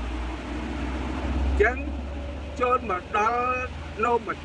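A low rumble from a passing vehicle, swelling to its loudest about a second and a half in and then easing, followed by a man speaking for about two seconds.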